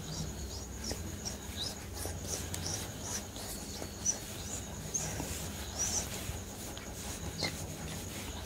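Soft close-miked ASMR sounds: faint, irregular small clicks and crackles, a few a second apart, over a steady low hum and a thin high-pitched whine.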